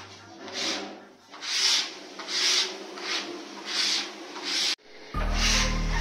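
A series of scratchy rubbing strokes, roughly one a second, from hand work across a plywood sheet. Background music with low steady tones comes in near the end after a brief gap.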